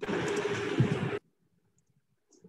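A burst of muffled noise and hum coming through the video-call audio, starting suddenly and cutting off abruptly after about a second.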